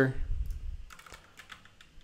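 Computer keyboard keys clicking faintly as a short word is typed, a few separate keystrokes.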